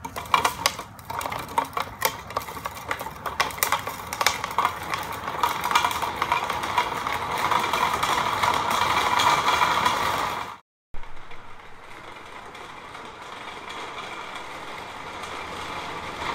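Empty plastic filament-spool wheels on skateboard bearings rolling on an asphalt path under a home-built coaster cart. At the push-off there is a clicking rattle, then a steady rolling noise that grows louder. The sound cuts out about ten and a half seconds in, and a fainter rolling noise then slowly grows louder.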